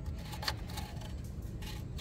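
A few faint clicks and rustles from a hand handling a rubber hose and wiring beside a tractor's radiator, over a low steady rumble.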